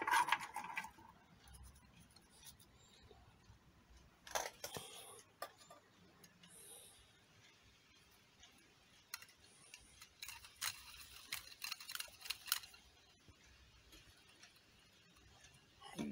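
Faint, scattered clicks and taps of a small plastic spinning top being handled in the fingers, in a cluster about four seconds in and again between about nine and thirteen seconds, with near quiet in between.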